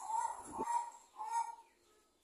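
Bird calls outdoors: two short bursts of calls, the first right at the start and the second about a second and a half in.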